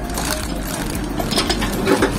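Clear plastic parts bag crinkling and rustling as it is handled, in irregular crackles, over a steady low hum.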